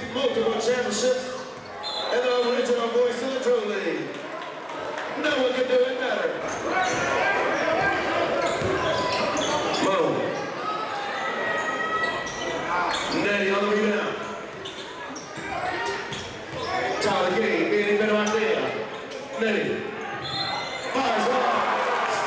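Basketball dribbled on a hardwood gym floor, its repeated bounces echoing in a large gym under the voices and shouts of the crowd.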